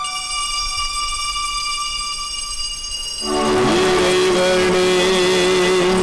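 Church music of long, steadily held chords with an organ-like tone. About three seconds in it swells suddenly into a louder, fuller chord with a hiss over it.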